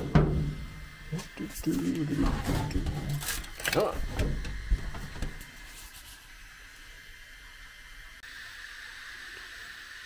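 Handling sounds of a textured PEI spring-steel 3D-printer build plate as a printed part is worked off it: a few light clicks and knocks over the first half. A faint steady hum follows.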